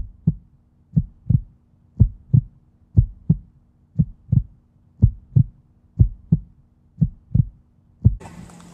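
Heartbeat sound effect: a low double thump about once a second, over a faint steady low hum.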